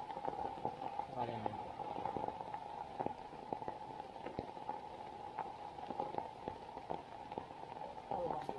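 Rain dripping and pattering, with many scattered sharp drip taps over a steady wash of noise; brief low voices about a second in.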